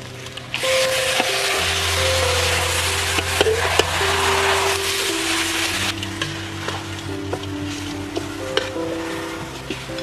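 Raw pig feet dropped into a hot wok of oil and sauce set off a loud sizzle about half a second in, easing off around six seconds. After that a metal spatula scrapes and turns them against the wok, with lighter sizzling. Background music with held notes plays underneath.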